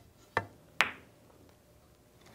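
A pool cue's tip clicking against the cue ball, then a sharper, higher click about half a second later as the cue ball strikes the two ball.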